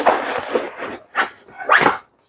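Nylon backpack fabric and straps rustling and scraping as they are handled, with two short sharp bursts of noise near the end.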